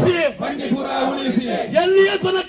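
A protest crowd chanting slogans in unison in call and response with a man shouting the lead lines into a handheld microphone. The long, held shouted vowels break off briefly about a third of a second in and again near the end.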